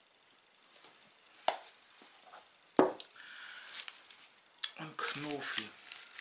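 Kitchen handling sounds while minced meat is seasoned with pepper. There is a small click, then a louder sharp click about three seconds in, followed by a short rasp. A few murmured words come near the end.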